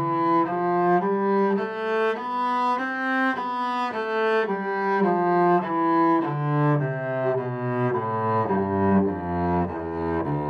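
A cello played with the bow, one note at a time in a melody, the notes changing about twice a second and dipping into the low register in the second half.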